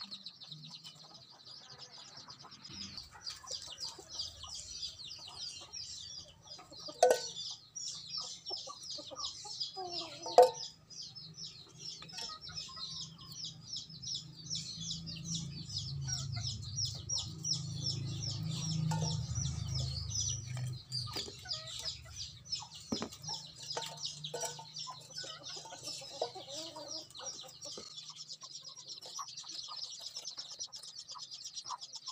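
Chickens clucking over a steady, fast, high-pitched chirping, with two brief loud sounds about a third of the way in.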